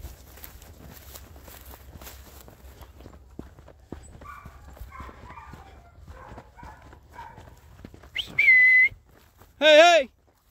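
Footsteps through field cover, then near the end a single steady whistle blast and a brief wavering call, signals to turn the working bird dogs.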